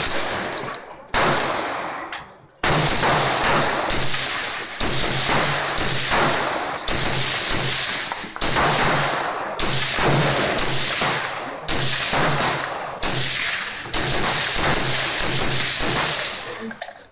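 AR-15 rifle firing .223/5.56 rounds through an FS762 suppressor: about fifteen single shots in a steady rhythm of roughly one a second, each trailing off in a long echo.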